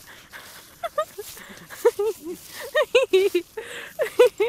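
High-pitched laughter in short bursts of giggles, growing busier in the second half.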